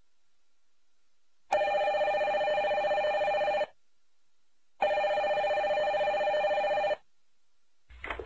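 Desk telephone ringing twice, each ring a trilling tone about two seconds long, with about a second's pause between the rings.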